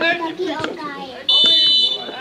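Players shouting, then about a second and a quarter in, a referee's whistle blown in one long steady blast, the loudest sound here, calling a foul as a player goes down.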